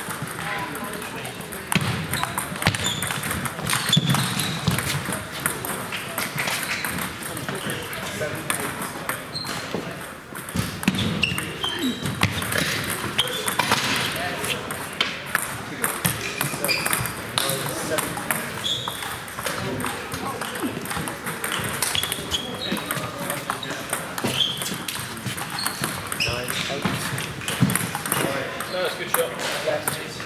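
Table tennis balls clicking off bats and tables from several matches in a sports hall, in an irregular patter of short, sharp pings, with players' voices in the background.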